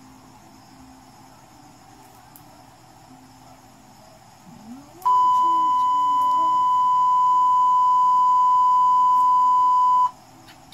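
A single steady, high electronic beep tone starts suddenly about halfway through, holds at one even pitch and loudness, and then cuts off. Before it there is only faint background noise.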